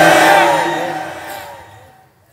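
A man's long chanted note over a public-address system trails off, its loudspeaker echo fading steadily away over about a second and a half.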